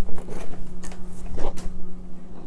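An opened cardboard toy box with a plastic window is handled and set aside, giving a few short rustles and knocks over a low steady hum.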